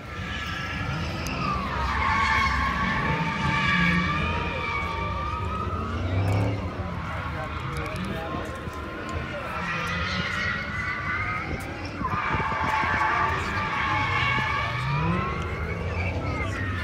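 Car tyres squealing in long, drawn-out screeches, three in all, with engine noise under them.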